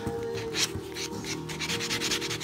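A four-sided nail buffer block is rubbed back and forth against a small quahog-shell piece, making repeated scratchy strokes as it smooths off the shell's little curves. Background music with held tones plays underneath.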